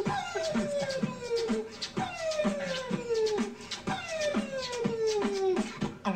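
A beatboxer performing: mouth-made percussive beats under a pitched vocal tone that slides down, repeated about every two seconds.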